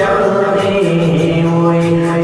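Islamic devotional chanting by a solo male voice, held in long melodic notes that step slowly from pitch to pitch.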